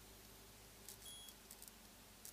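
Faint clicks of buttons being pressed on a JVC car stereo head unit, with one short high electronic beep about a second in.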